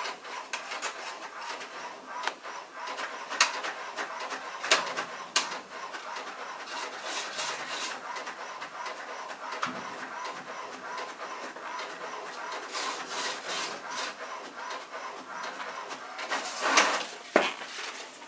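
Small home inkjet printer printing: a steady mechanical rasping whir from the carriage and paper feed, broken by scattered sharp clicks, with a louder burst near the end.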